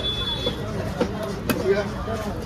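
A heavy cleaver chopping into fish on a wooden chopping block, with one sharp chop about one and a half seconds in and a lighter knock just before it, over background voices and market chatter.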